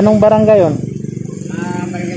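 A small engine running steadily with a fast, even pulse, under a man's voice.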